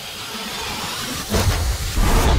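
A steady hiss like escaping steam, then a louder whoosh with a low rumble starting about one and a half seconds in.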